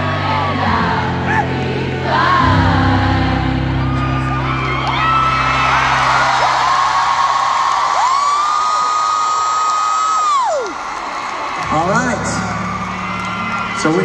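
Live band music with singing winds down about halfway through, giving way to arena crowd cheering. A fan close to the microphone screams one long high note for about two seconds, and the music starts again near the end.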